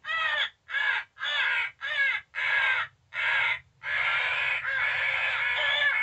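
Cass Creek Ergo electronic crow call playing recorded crows cawing through its small speaker: about seven short, harsh caws in quick succession, then an unbroken stretch of calling from a little past halfway.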